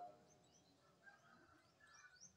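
Near silence with a few faint, short bird chirps in the background.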